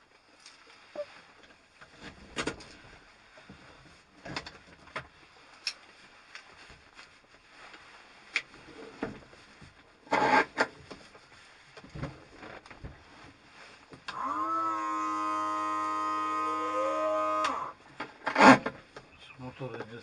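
Scattered clicks, knocks and rustles of a pilot's headset and its intercom plug being handled close to the microphone in a small aircraft cockpit, with the engine not yet started. About fourteen seconds in, one steady pitched note with a slight rise at its start is held for about three and a half seconds.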